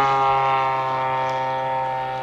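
Radio-controlled Top Flite P-51 Mustang's MT-57 engine running in flight, a steady drone that holds one pitch and slowly fades as the plane draws away.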